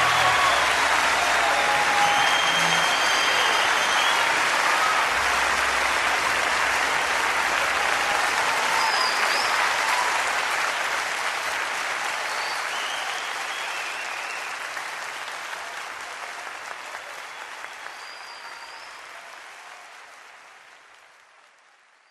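Audience applause with a few whistles, fading out slowly over the second half until it is almost gone.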